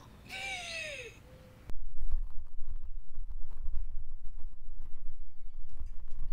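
A woman's brief vocal sound sliding down in pitch, then loud, irregular low rumbling and knocking as the camera is handled close up.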